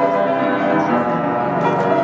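Grand piano being played, a run of notes ringing over one another.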